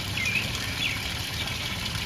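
Steady splash of water pouring down a tiered barrel fountain, with two short bird chirps in the first second.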